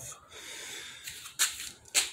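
A man's breathing in a pause between sentences: a soft drawn breath, then a short noisy burst about one and a half seconds in.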